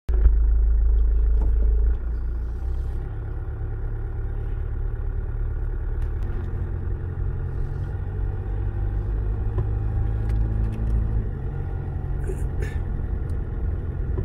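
Car engine and road noise heard from inside the cabin while driving: a steady low rumble, louder for about the first two seconds, then settling to an even level.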